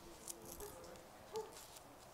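Faint rustle of paper Bible pages being turned, in short scratchy strokes, with soft murmured voices underneath.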